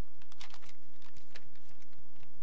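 Scattered small clicks and taps of papers and notes being handled at a lectern close to its microphone, with the sharpest cluster about half a second in.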